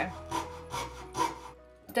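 Hand fret saw cutting through thin plywood: about four short scratchy back-and-forth strokes that stop about one and a half seconds in.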